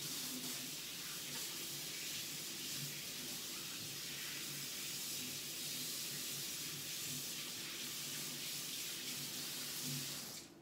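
Water running steadily from a faucet as hands are rinsed under it.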